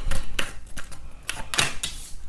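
A few light, irregular clicks and taps of tarot cards being handled on a tabletop.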